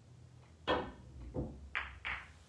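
Pool shot: the cue tip strikes the cue ball with a sharp click, followed by a duller knock and then a second sharp click as the balls collide on the table.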